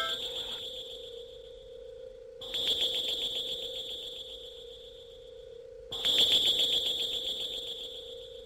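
High-pitched electronic tone, rapidly pulsing like an alarm, that comes in loudly twice and fades away each time, over a steady low electronic hum.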